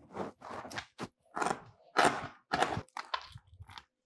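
Whole turbot being shifted and set on a cutting board: a run of about eight short, irregular scraping and rubbing noises.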